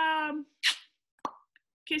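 A woman's voice holding a long, drawn-out pitched note that ends about half a second in. It is followed by a short breath and a single sharp lip click, then the start of a spoken word.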